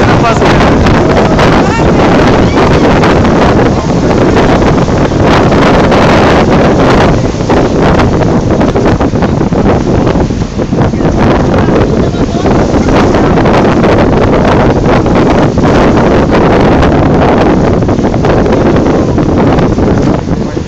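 Strong wind buffeting the microphone on the open deck of a moving boat, a loud, constant rushing roar with water and hull noise underneath.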